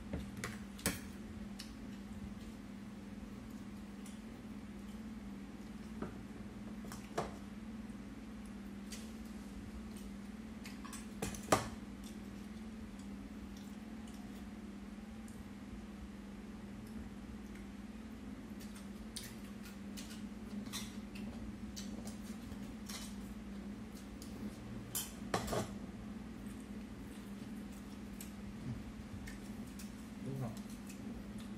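Chopsticks clicking and scraping against a ceramic plate and bowl while eating: scattered sharp taps, the loudest about halfway through. A steady low hum runs underneath.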